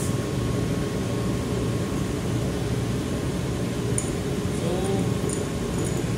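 Steady ventilation and machinery hum filling a ship's engine control room, with a thin, constant whine above it.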